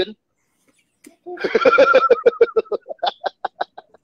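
A man laughing heartily: a short voiced start about a second in, then a quick run of 'ha-ha-ha' pulses that trails off.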